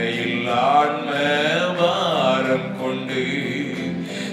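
A man singing a Tamil hymn into a microphone in a slow, chant-like line, his pitch wavering and bending on held notes.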